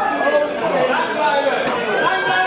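Chatter of many overlapping voices, spectators talking and calling out, in a large sports hall.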